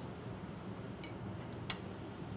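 Two light clicks of a spoon against a small plastic container, about a second in and near the end, as poultry fat is scraped out into a pot, over a low steady kitchen hum.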